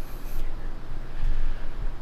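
Low, uneven rumble of handling noise on a handheld camera's microphone as it is carried around while walking.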